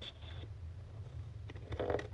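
Scissors cutting through scrapbook paper, with a few short, faint snips near the end over a steady low hum.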